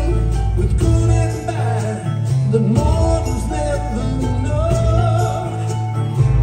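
Live rock band playing a slow folk-rock song, with a male and a female voice singing over bass, drums and guitar.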